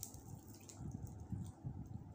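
Fingers tearing apart a whole roast chicken: faint moist pulling of skin and meat, with a few soft, irregular thumps in the second half.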